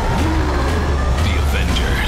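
Movie-trailer soundtrack: the Hulk roaring over music and a deep, steady rumble.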